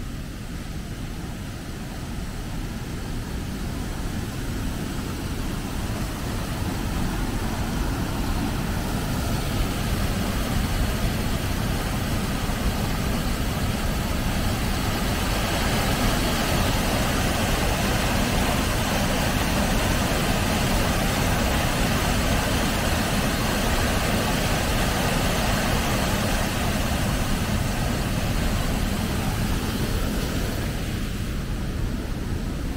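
Water pouring over a stone weir into the pool below: a steady rushing that grows louder over the first several seconds as it is approached, then holds steady.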